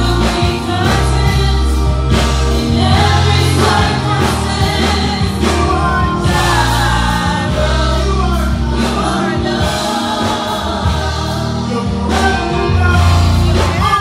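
Live gospel worship song: a male lead singer with backing vocalists over a band with bass and drums.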